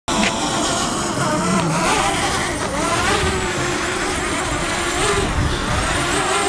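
Whine of a DJI Mavic Mini quadcopter's propellers in flight, a steady buzzing tone whose pitch drifts up and down as the drone manoeuvres.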